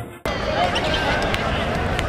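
Background music cuts off abruptly a quarter second in. Live arena sound from a basketball game follows: a basketball bouncing on the hardwood court, short squeaks, and the chatter of the crowd.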